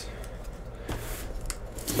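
Light handling noise on a cardboard shipping case: soft rubbing and rustling, with a couple of small clicks about a second in and again shortly after.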